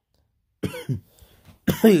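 A man's short cough about half a second in, after a brief silence. He starts speaking again near the end.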